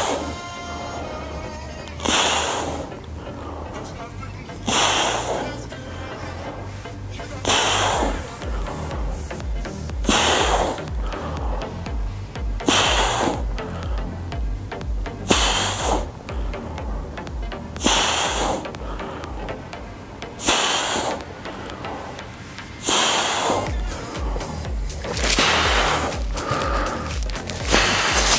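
A man breathing out hard in short rushes of breath, once on each rep of dumbbell skull crushers, about every two and a half seconds. Background music with a steady beat plays under it.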